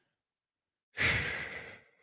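A man sighing once into a close microphone: a breathy exhale about a second in that fades away within a second.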